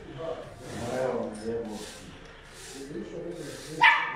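Indistinct men's voices talking, with a brief sharp sound just before the end.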